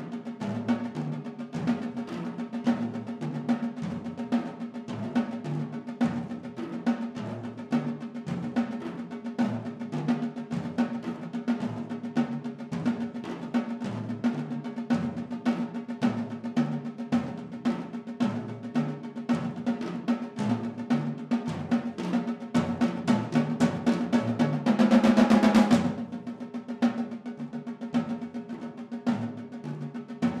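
Two percussionists playing a fast, continuous pattern of strokes with sticks on a set of tuned tom-toms, the drums ringing at distinct pitches. About 22 seconds in the playing swells into a loud roll that cuts off sharply a few seconds later, and then the rapid strokes carry on.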